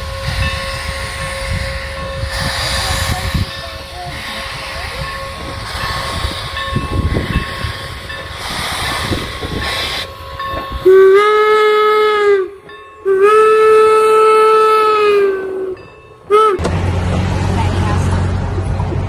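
Steam locomotive hauling a passenger train: a steady low rumble of the running train, then its steam whistle blows two long blasts past the middle and a short toot after them. A low steady hum takes over near the end.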